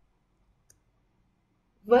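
Near silence with a few faint, brief clicks, the clearest about two-thirds of a second in; a woman's voice begins speaking just before the end.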